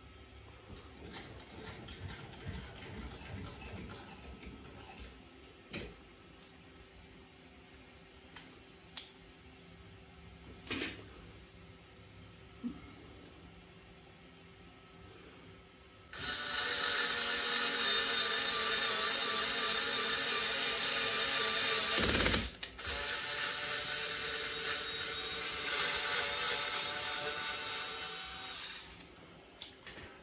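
A cheap cordless screwdriver drives an M3 spiral tap into a hole in an aluminium part, threading it. The motor runs with a steady whine for about 13 seconds in the second half, stopping briefly once partway through. Before it starts there is only faint handling with a few small clicks.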